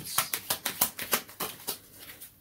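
A deck of oracle cards being shuffled by hand: a rapid run of crisp card clicks, about six a second, thinning out near the end.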